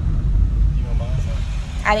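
Steady low rumble inside a moving car's cabin, with brief faint speech about a second in and a woman's voice starting near the end.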